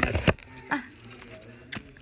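A plush mini backpack being handled, the small toys packed inside it clinking and rattling. It opens with a loud knock or two, then scattered light clicks.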